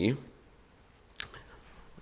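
A pause in a man's talk: low room tone with one short, sharp click just over a second in, and a few fainter ticks.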